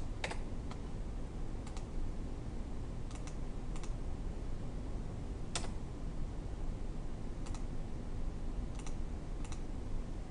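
Scattered keystrokes on a computer keyboard, about nine short clicks spread irregularly, the loudest about five and a half seconds in, over a steady low background hum.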